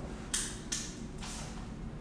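A person moving at a desk, making three short scrapes: two sharp ones close together under a second in, and a softer one just after a second.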